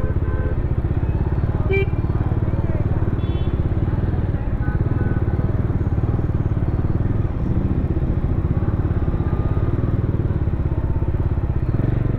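Bajaj Dominar 400 BS6's single-cylinder engine running steadily at low city speed, heard from on the bike.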